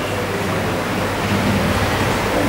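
Steady hiss with a low hum underneath: room tone with no distinct event.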